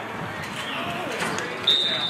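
Voices shouting across the field, then near the end a referee's whistle starts one long, steady, high blast, the loudest sound here, ending the play as the ball is caught in the end zone.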